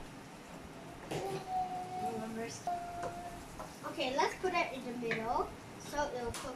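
Indistinct voice sounds, a few of them held as steady notes, coming and going over a quiet background.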